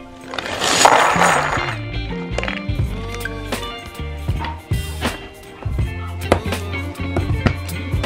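Background music with a stepping bass line. About half a second in comes a loud, noisy rattle lasting about a second, from a cardboard box of furniture fittings (wooden dowels, metal cam locks and screws) being handled.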